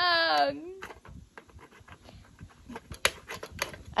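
A child's drawn-out high-pitched exclamation, then a run of small plastic clicks and taps as the Sylvanian Families cabin's porch railing and door are handled. One sharper snap comes about three seconds in, as a piece of the toy house breaks.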